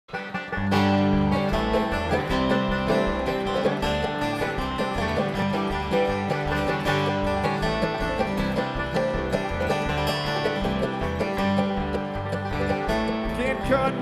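Live bluegrass band playing an instrumental intro: banjo, mandolin, acoustic guitar, dobro and upright bass, with the bass keeping a steady beat under picked melody notes. The music starts about half a second in.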